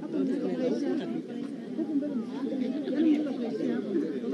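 Several people talking at once, an indistinct murmur of overlapping conversation.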